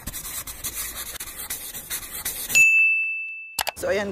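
Logo-animation sound effects: a scratchy brushing, rubbing noise for about two and a half seconds, then a single bright ding that rings on one high note for about a second and cuts off.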